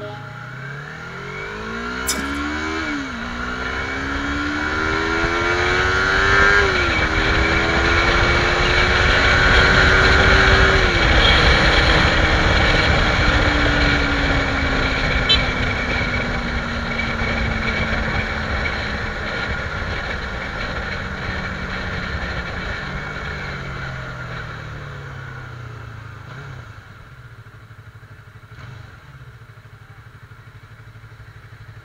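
Sport motorcycle engine, recorded from the bike itself, accelerating hard through three quick upshifts, the revs climbing and dropping at each change. It then holds and slowly winds down as the bike slows to low revs near the end, with wind rush loudest at top speed.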